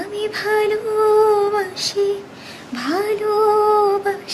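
A woman singing unaccompanied in a high voice, holding long sustained notes. There are two phrases with a brief note between them, and the second phrase starts with a rising scoop about three seconds in.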